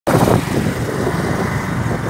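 Motorbike engine running and wind noise while riding along a road.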